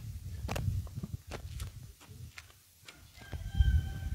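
A rooster crowing faintly near the end, one long held call, over footsteps on a paved street and a low thump.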